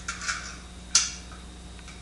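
Light metal handling noises from a steering gearbox under adjustment, with one sharp click about a second in, over a steady low electrical hum.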